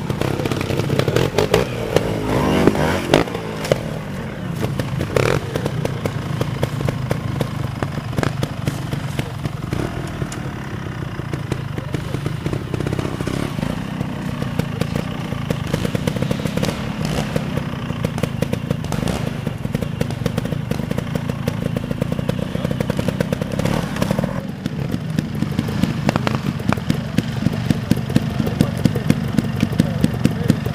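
Trial motorcycle engines running at low revs and rising and falling with the throttle as the bikes climb and drop over rocks and roots, with scattered knocks and clatter from the bikes on the ground.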